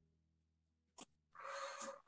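Near silence, then a faint click about a second in, followed by a short breathy exhale lasting about half a second.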